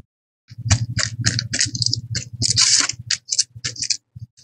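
Paintbrush stroking glue over thin decoupage paper, short scratchy strokes several a second, with rustling of the paper sheets.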